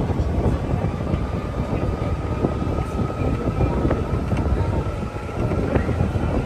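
Open electric sightseeing cart driving off: rumbling wind and road noise on the microphone, with a thin electric-motor whine that slowly rises in pitch as the cart picks up speed.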